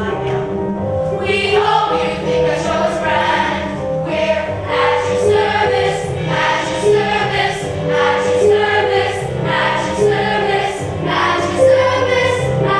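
Young stage-musical cast singing a chorus number together, one held note after another.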